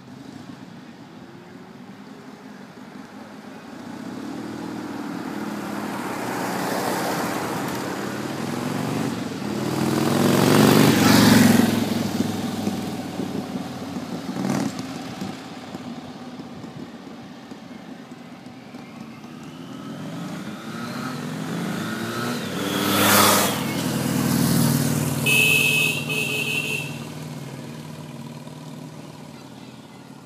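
Motorcycles and a car setting off up a street and driving past close by. There are two loud pass-bys, about a third of the way in and again about three-quarters of the way in, each engine note rising then dropping away as it goes past. A brief high beep follows the second pass.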